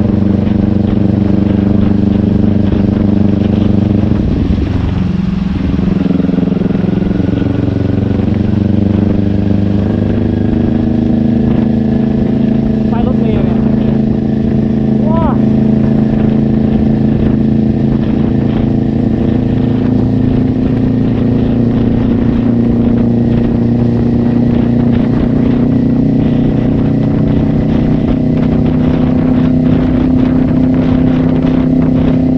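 Kawasaki Ninja 400's parallel-twin engine heard from the rider's seat while riding, a steady drone that dips in pitch about five seconds in, then climbs slowly in pitch.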